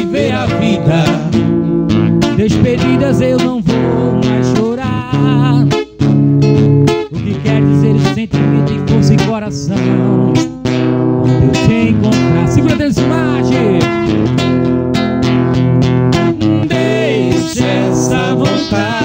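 Acoustic guitar strummed in a steady pattern, accompanying a man singing a slow, emotional song with wavering vibrato on held notes. The music breaks off for a moment about six seconds in and again near the middle.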